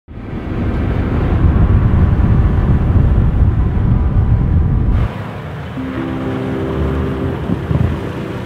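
Heavy wind rush and tyre rumble on a camera mounted on the outside of an SUV driving along a snow-covered road. The noise cuts off abruptly about five seconds in, and a quieter stretch follows with a few briefly held steady tones.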